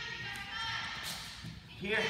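Two wrestlers shifting their positions on a foam wrestling mat: light scuffs and soft thumps.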